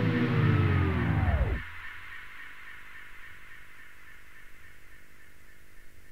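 The track on a vinyl acetate slows and sinks in pitch to a dead stop about a second and a half in, like a turntable powering down. After it only a steady hiss with a faint hum remains.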